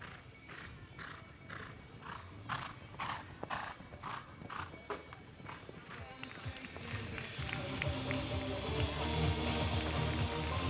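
A horse's hoofbeats cantering on a sand arena, about two strides a second. Music fades in about halfway through and grows louder to the end.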